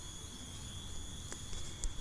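Steady, high-pitched drone of insects in the background, with two faint clicks near the end.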